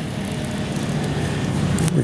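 An engine running steadily with a low hum, growing gradually louder.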